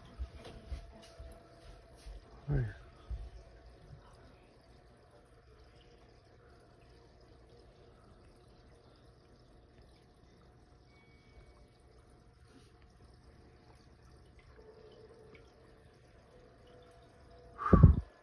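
Aquarium sponge filter bubbling faintly as air rises through its lift tube, over a faint steady hum. A short voice sound comes about two and a half seconds in, and a loud short burst comes near the end.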